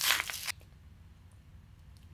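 Ice cream carton being opened and handled: a short crinkling, tearing noise in the first half second, then only faint handling clicks.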